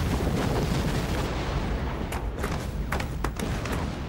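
Explosion sound effect of a naval mine blast against a warship: a long rumbling blast that slowly dies away, with a few sharp cracks in its second half.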